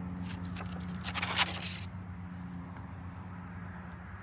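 A thin vinyl stencil being peeled up off wet concrete, crinkling and scraping for about the first two seconds, loudest about a second and a half in. A steady low hum runs underneath.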